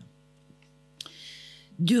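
Steady electrical mains hum from the PA and lectern microphone during a pause in speech. About a second in comes a short breathy hiss, the speaker drawing breath into the microphone, before her voice starts again near the end.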